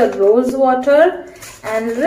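A woman speaking, with a short pause about midway.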